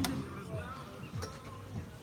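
A door being opened and let go: a sharp latch click at the start and a lighter click about a second later, over faint voices.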